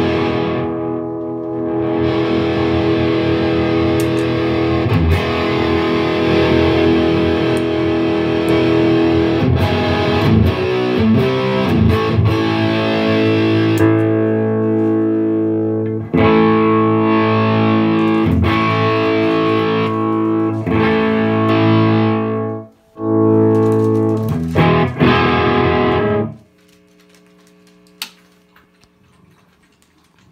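Electric guitar played through an Egnater Tweaker 88 valve amp head, with distorted chords held and changed every second or two and a brief break about three quarters of the way in. The playing stops about four seconds before the end, leaving a faint low amp hum and a single click.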